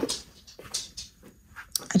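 A pet dog in a small room making a few short, soft noises.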